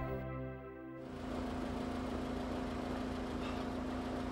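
Background music fades out in the first second, then a parked Mercedes-Benz sedan's engine idles steadily with a low, even hum.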